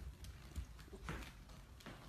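A puppy's paws and claws tapping on a hard floor as it trots, a few quiet irregular taps with a couple of firmer ones about a second in and near the end.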